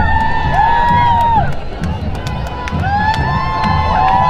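Parade crowd cheering, with many overlapping whoops that rise and fall in pitch, and scattered claps.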